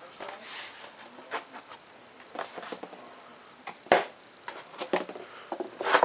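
Handling noise from a foam-board model airframe: light rustling and scattered small taps and clicks, with one sharp knock about four seconds in.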